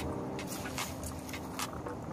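Pot of coconut-milk cooking liquid with red kidney beans at a rolling boil, bubbling with irregular small pops.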